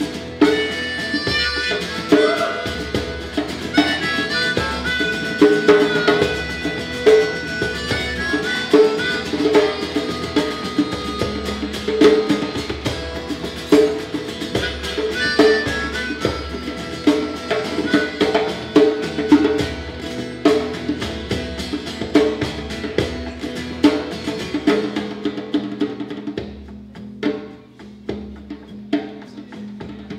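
Harmonica solo played into a vocal microphone over a live rock band with drum kit keeping a steady beat. The band drops back and gets quieter in the last few seconds.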